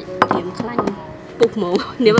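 A large jackfruit set down and handled on a wooden tabletop, giving a couple of sharp knocks: one just after the start and one about two-thirds of the way in. Short voice exclamations run between them.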